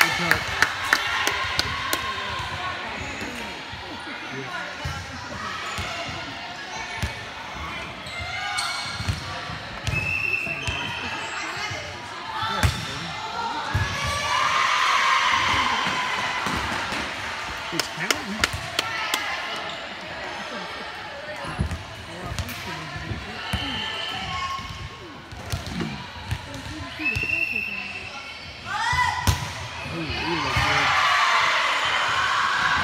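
Volleyball rally sounds in a large gymnasium: sharp slaps of the ball being struck and hitting the floor, scattered in clusters, over players' voices calling and chattering throughout.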